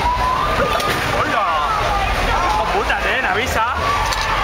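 Bumper-car riders shouting with voices that glide up and down: one long held shout near the start, then many short ones. Under them runs a steady low rumble.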